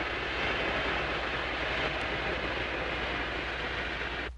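Hydrophone recording of an ARB boat's motors running at 1500 rpm, heard underwater as a steady, even rush of noise over a low hum. Above 800 rpm the hydrophone reception of the speedboat motors differs from a fishing boat's engine, so this sound gives the boat away.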